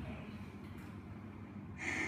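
Low room noise, then a person's short audible breath near the end.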